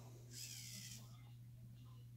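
Near silence over a steady low hum, with one faint, brief scratchy rustle about half a second in: the plastic chassis and rubber tyres of an Axial SCX10 II RC crawler being handled as its suspension is pressed down by hand.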